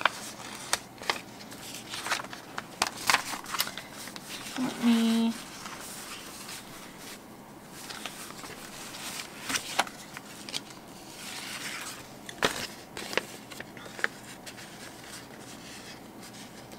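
Sticker sheets and paper being handled: light clicks and crinkles of peeling and rustling, thicker in the first few seconds and sparser later.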